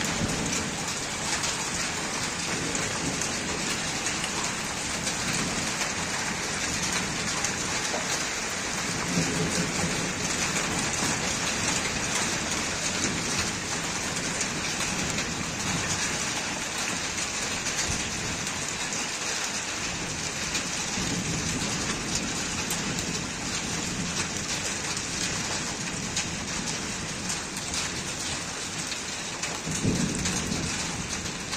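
Rain falling steadily in a thunderstorm, with low rolls of thunder about nine seconds in and again near the end.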